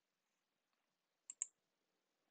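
Near silence, with two short, faint clicks close together a little past halfway.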